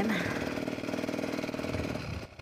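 Beta Xtrainer 300 two-stroke dirt bike engine running steadily while the bike rolls slowly.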